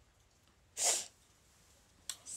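A woman's single stifled sneeze into her hand, a short breathy burst about a second in.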